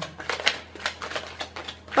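A deck of tarot cards being shuffled by hand, cards slipping from one hand to the other in a quick, irregular run of crisp little flicks and clicks.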